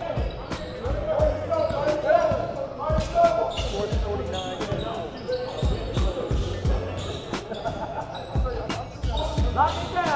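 A basketball being dribbled on a hardwood gym floor: repeated low thumps, amid sharp clicks and voices echoing in the gym.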